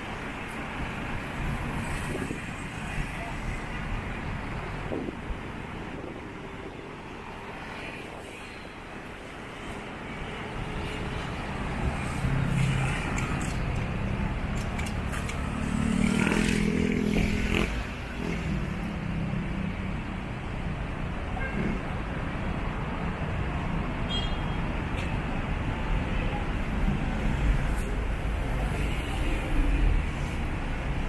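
Road traffic in a city street: cars and vans passing and idling at an intersection, with one vehicle's engine passing close and loudest about halfway through.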